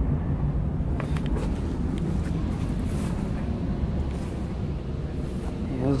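Steady low rumble with a faint hum running under it, and a couple of faint clicks.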